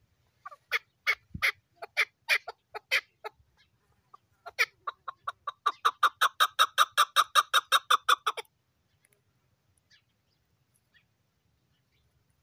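Chukar partridge calling: a string of spaced chuck notes, about two a second, then after a short pause a faster, even run of about six notes a second that breaks off after about four seconds.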